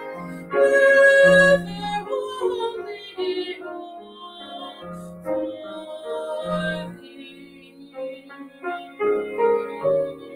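A woman singing a hymn solo with grand piano accompaniment. The singing is loudest in the first two seconds, then the piano carries on more softly.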